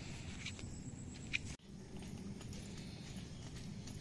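Footsteps on a dirt footpath, a sharp step about every two-thirds of a second, breaking off suddenly about one and a half seconds in; after that only a steady low outdoor rumble.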